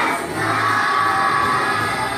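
A children's choir singing together over a musical accompaniment, the voices holding long notes.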